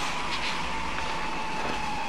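Steady background noise with a faint, high-pitched whine running under it.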